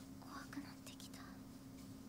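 Faint, whispery speech in a few short snatches, over a steady low hum.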